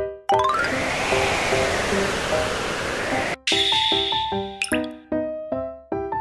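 Background music of short plucked notes; about a quarter second in, a rising run of notes leads into a rushing noise that lasts about three seconds and stops abruptly, after which the plucked notes resume, with a quick rising sweep near the end.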